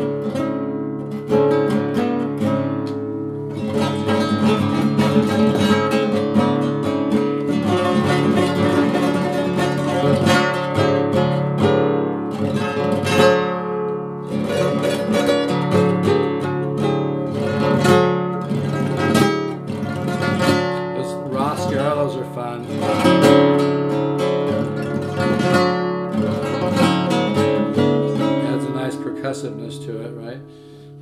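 Nylon-string classical guitar played fingerstyle in an altered tuning (D A D F# B E, with the low E dropped to D and the G string to F#): plucked chords and patterns over ringing open bass strings.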